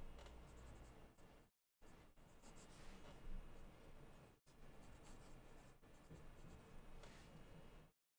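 Faint scratching of a pen writing on paper, broken twice by brief moments of dead silence.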